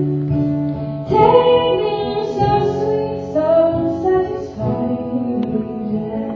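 A woman singing a folk song live, accompanied by acoustic guitar.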